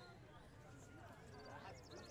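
Faint outdoor ambience: distant voices of people talking, with footsteps on stone paving.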